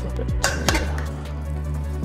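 Background music with a steady beat, with two sharp metal clinks about half a second in as kitchen tongs knock against the slow cooker pot while turning a brisket.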